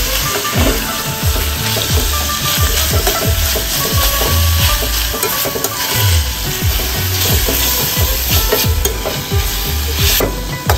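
Vegetables sizzling as they are stir-fried in a stainless steel pan, with a metal spatula scraping and knocking against the pan many times over a steady hiss.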